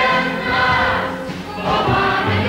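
A large cast of young performers singing together in chorus, in held notes and phrases of about a second each.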